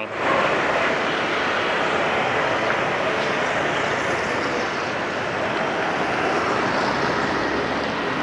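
Street traffic, mostly motorbikes with some cars, passing in a steady, even rush.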